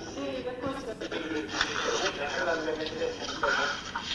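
Indistinct speech, quieter than the main talk and too unclear for the words to be made out, with a slightly boxy, television-like sound.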